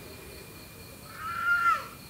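Crickets chirring faintly and steadily at night, with one short high-pitched call about a second in that swells and then falls away.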